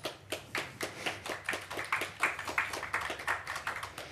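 A small audience applauding: many separate hand claps in an irregular patter that stops near the end.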